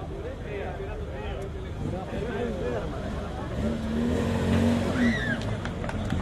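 Opel Kadett C 1.2 S four-cylinder engine running as the rally car moves off, its steady note growing louder for a second or two past the middle. People chatter around it.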